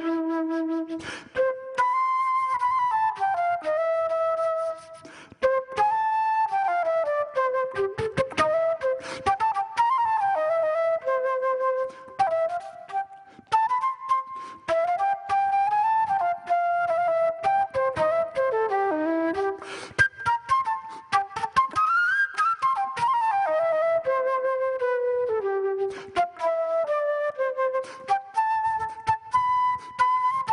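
Concert flute played live in a jazz style into a microphone: one melodic line of flowing runs and held notes, with short breaks in the phrasing about five seconds in and again around twelve to thirteen seconds.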